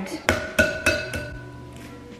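An egg knocked about four times in quick succession against the rim of a bowl as it is cracked one-handed, the bowl ringing briefly after each knock.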